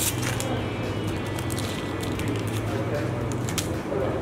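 Steady low hum with a few faint, light clicks from a wire trace and a brass power swivel being handled and threaded.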